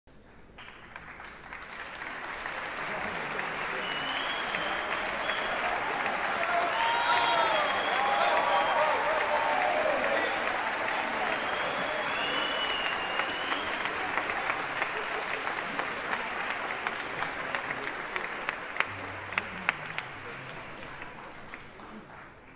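Concert-hall audience applauding, swelling up over the first few seconds and slowly dying away toward the end, with some voices cheering in the middle and a few louder single claps as it fades.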